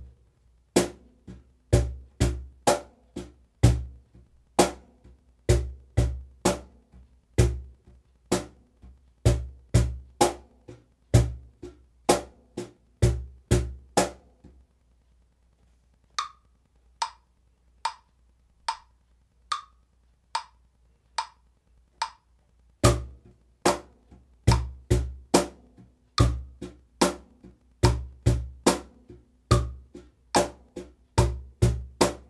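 Cajon played with bare hands in a slow eighth-note groove: deep bass tones on beat one and on both halves of beat three, sharper high tones from the left hand on two and four, over a metronome's light clicks at about 72 beats a minute. About halfway through, the playing stops for several seconds, leaving only the metronome's clicks, then the groove starts again.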